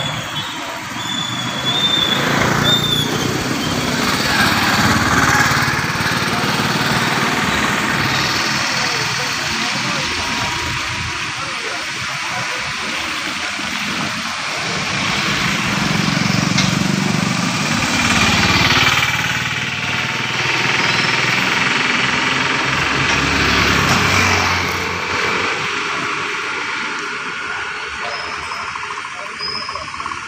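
Road traffic passing close by: a car near the start and a motorcycle engine swelling and fading about halfway through, over the chatter of people's voices.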